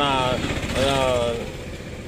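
A man speaking Telugu, with a motor vehicle running in the background about half a second in.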